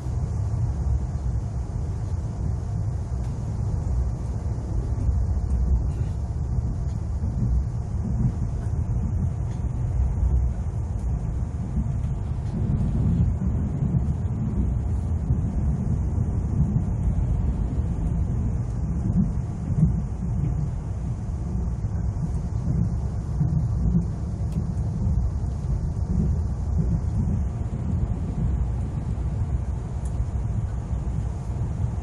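Steady low rumble of an ITX-Saemaeul electric train running at speed along the track, heard from inside the passenger cabin.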